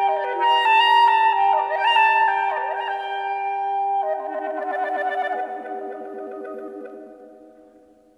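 Instrumental background music: sustained notes with several upward sliding notes over a held low tone, turning to a wavering lower line about halfway through and fading out toward the end.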